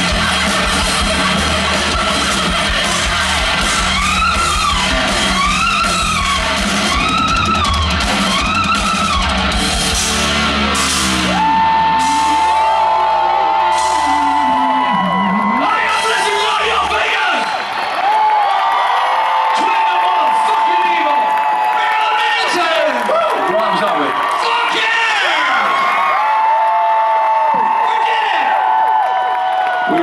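Live hard rock band with distorted guitar, drums and bass playing loud through the first ten seconds or so; the drums and bass then drop away, gone by about seventeen seconds in, and the song winds down to drawn-out high notes and yelled vocals.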